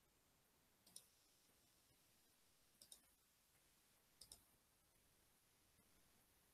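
Near silence broken by a few faint computer mouse clicks: one about a second in, then pairs of clicks around three and four seconds in.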